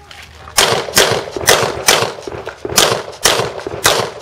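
Rapid handgun shots: four about half a second apart, a short pause, then three more at the same pace.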